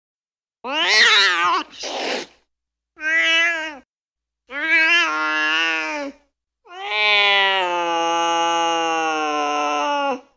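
Recorded cat calls played back from a cat-sounds phone app: a wavering yowl, then shorter meows with short silent gaps between them, and finally one long drawn-out yowl lasting over three seconds.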